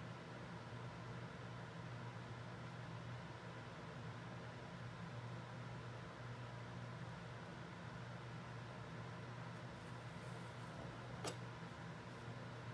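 Steady low room hum and hiss, with a single faint click near the end.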